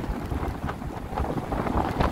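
Strong wind of about 37 km/h buffeting the microphone in uneven gusts, a heavy low rumble with a fainter hiss above it.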